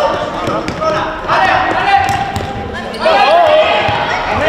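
Futsal ball thudding on the sports-hall court floor as it is dribbled and kicked, under shouts and calls from the players and spectators, echoing in the hall.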